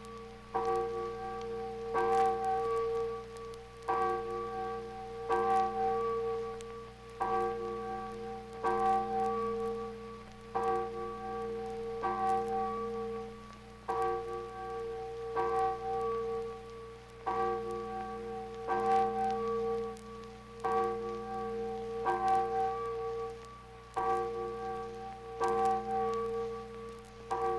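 A church bell tolling on an old 78 rpm sound-effects record, struck at the same pitch about every one and a half to two seconds in an uneven, paired rhythm, each stroke ringing on into the next. A steady low hum and disc surface crackle run underneath.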